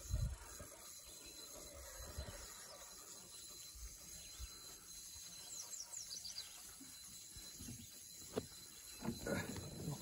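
Quiet outdoor ambience on open water: a low rumble, a faint steady high insect tone, a quick run of high descending chirps about halfway through, and a single sharp click a little after eight seconds.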